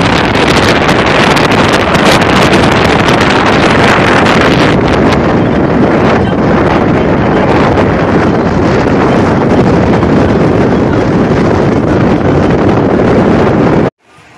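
Loud wind buffeting the microphone while travelling in a moving vehicle, a steady roar that cuts off suddenly at the end.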